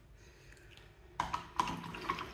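A paintbrush being rinsed in a cup of water, knocking against the cup in quick clicks that start about a second in.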